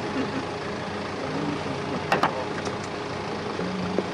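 A vehicle engine idling under steady background noise, with one short sharp click about two seconds in.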